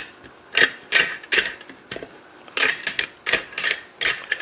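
Sharp metallic clicks and knocks as a stainless steel Knog padlock is shifted in the jaws of a Panavise bench vise that is being opened up. Three single knocks are spaced out in the first half, then a quicker cluster of clicks comes in the second half.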